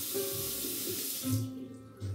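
Water running from a tap into a sink, shut off abruptly about a second and a half in, over soft background music.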